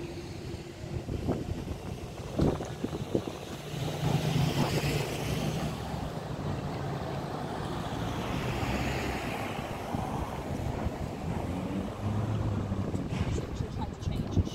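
Street traffic: a motor vehicle's engine hums steadily for several seconds over a haze of traffic noise that swells and fades. A few sharp knocks come about two and a half seconds in.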